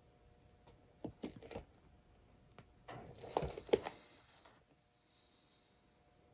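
Light knocks, taps and rubbing as a wooden round is gripped and shifted on the work table, in two bursts: a short one about a second in and a longer, louder one around three to four seconds in.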